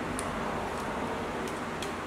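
Steady hiss of room noise with a few faint clicks as the threaded end of an adjustable track bar is twisted by hand.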